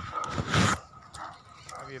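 A dog gives one short bark about half a second in.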